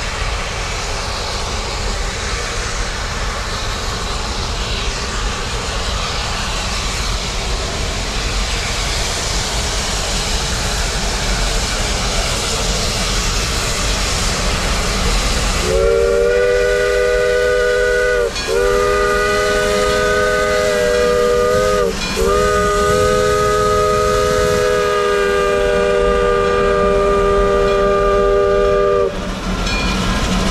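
Shay geared steam locomotive approaching with a steady hiss and rumble, then, about halfway through, sounding its chime steam whistle in three long blasts, the last one the longest.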